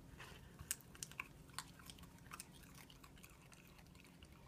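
A smooth miniature dachshund chewing leafy greens from a plastic slow-feeder bowl: faint, irregular crisp crunches and clicks, most of them in the first half.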